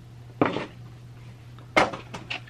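Hands handling the contents of a cardboard trading-card box as items are lifted out: a brief scrape about half a second in and a sharp tap near the end.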